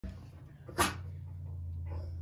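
A Great Pyrenees dog gives one short, sharp sneeze just under a second in, followed by a fainter puff of breath near the end, over a steady low hum.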